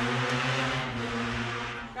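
A motor running steadily at one constant pitch, stopping suddenly just before the end.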